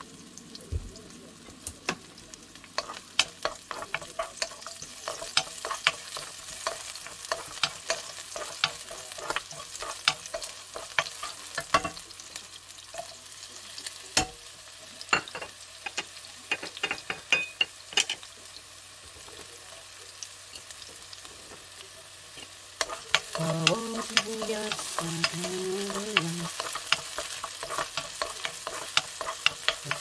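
Garlic cloves frying in oil in a nonstick pan, a steady sizzle with many sharp crackling pops, stirred now and then with a wooden spoon. A low voice comes in over the frying near the end.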